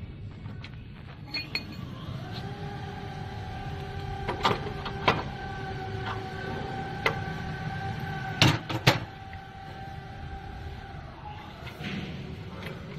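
Metal wrench clinking against the hose fitting on a plasma cutter's output connector while the air line is tightened: a handful of sharp clicks, the loudest two close together late on, over a steady held background tone.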